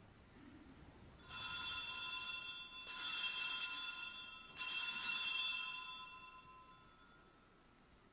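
Altar bells rung three times at the elevation of the chalice after the consecration, each ring a bright cluster of high tones that dies away over a second or two.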